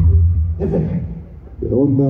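A live band's music cuts off, its last low bass note dying away in the first half-second. A man's voice then calls out twice.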